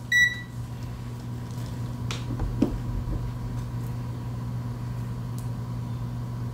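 Digital multimeter giving one short, high power-on beep as it is switched on, followed by a steady low hum with a few faint clicks.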